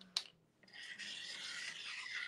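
A brief click, then a steady scratchy rubbing for about a second and a half: a hand rubbing over the surface of the painted door-hanger blank.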